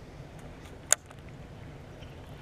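Faint steady rush of current flowing out of a culvert pipe into a pond, with one short sharp click about a second in.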